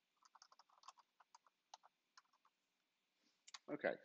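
Faint computer keyboard typing: a quick, uneven run of keystrokes that stops about two and a half seconds in. A man says "OK" at the very end.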